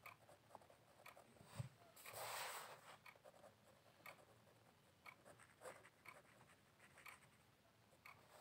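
Pen writing on notebook paper: faint scratching strokes and small ticks, with a slightly louder rustle about two seconds in.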